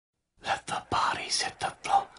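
A person whispering, starting about a third of a second in.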